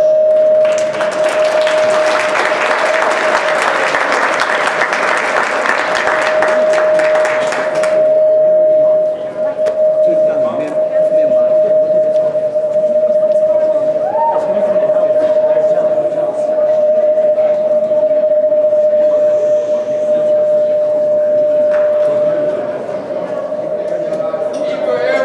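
Audience applauding for about seven seconds, then stopping, with a steady ringing tone from the hall's sound system sounding beneath it; faint talk follows the applause.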